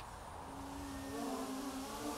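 Small quadcopter's electric motors and propellers spinning, a faint whine whose pitch wavers and climbs slightly near the end as the drone readies to lift off.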